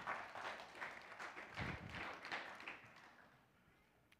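Congregation applauding, the clapping dying away about three seconds in.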